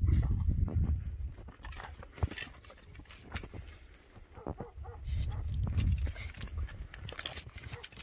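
Dogs sniffing and snuffling at close range, with scattered short clicks and scrapes. There are two spells of low rumble, one in the first second and one about five to six and a half seconds in.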